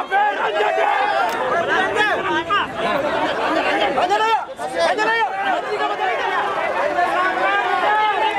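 A dense crowd of people talking and calling out at once: many overlapping voices, with no single speaker standing out.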